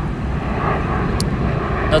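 Steady low rumble of background noise, with one short, sharp click a little past a second in.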